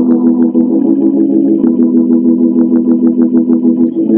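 Electric organ playing steady held chords, with a light, quick ticking beat over them.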